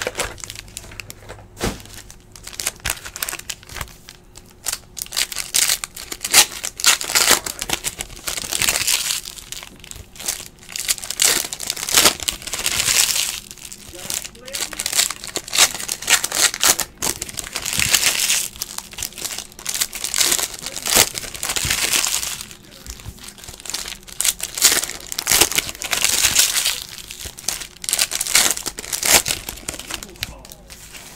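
Trading-card pack wrappers being torn open and crinkled by hand as the cards are pulled out and handled, in repeated irregular bursts of crackling.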